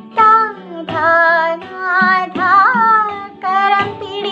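A young woman singing a Malayalam song solo, in phrases with gliding, ornamented notes, over a steady low sustained accompaniment note.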